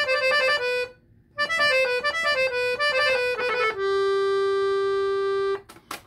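Salanti piano accordion with hand-made reeds, played on its bassoon register: a short phrase, a brief pause, a quick run of notes, then one long held note that stops shortly before the end.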